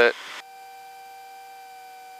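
Steady faint hum of a few fixed high tones in the aircraft's headset intercom audio; a short hiss of the open intercom cuts off about half a second in.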